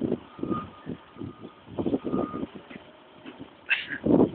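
A vehicle's reversing alarm beeping at one steady pitch, on and off, over a string of irregular knocks and clatters.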